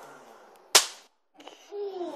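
A single snap pop (a paper-wrapped pinch of gravel and a tiny explosive charge) going off with one sharp crack as it hits concrete, about three quarters of a second in.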